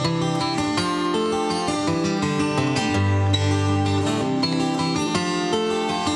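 Acoustic guitar playing an instrumental introduction to a song: a run of picked notes and chords at a steady level, with no voice yet.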